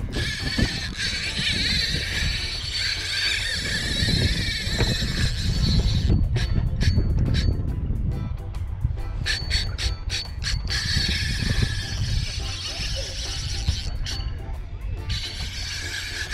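Spinning reel's drag buzzing as a large fish strips line off a light-action rod; the angler takes the fish for a shark that is spooling the reel. The buzz breaks off briefly several times in the second half, over a heavy rumble of wind on the microphone.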